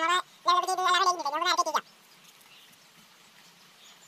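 A high-pitched human voice speaking or calling in two short stretches over the first two seconds, then only faint background noise.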